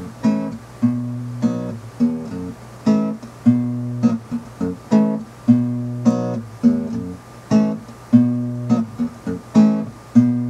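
Acoustic guitar strummed in a steady rhythm, about two strokes a second, the chords ringing on between strokes.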